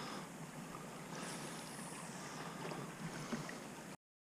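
Faint outdoor ambience from a small boat on a lake: a light hiss of wind and water with a few soft clicks. It cuts off suddenly at the end.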